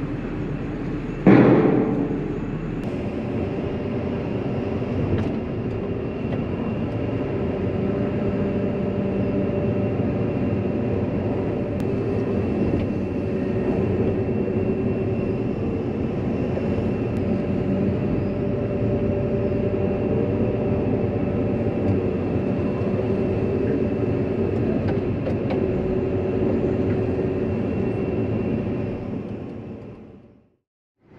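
Excavator engine and hydraulics running steadily at working revs, heard from inside the cab, with a loud sharp burst about a second in. The sound fades out at the end.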